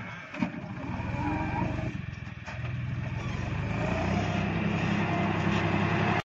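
Diesel tractor engine running, dipping briefly near the start and again around two seconds in, then rising and holding steady. A single sharp knock about half a second in.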